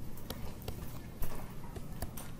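A stylus tapping and sliding on a tablet screen while drawing, heard as a few light, irregular clicks.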